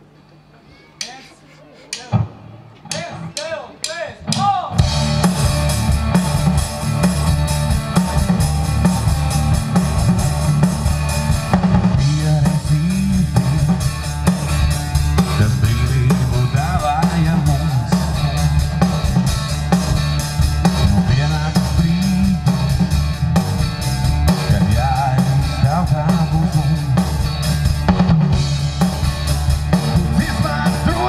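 Live rock band with drum kit, electric guitars and keyboards starting a song: a few sparse strikes, then about five seconds in the full band comes in and plays a steady, loud instrumental intro.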